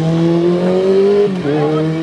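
Motorcycle engine accelerating along the road, its pitch climbing steadily until it drops sharply about a second and a half in with a gear change, then running on at a steady pitch.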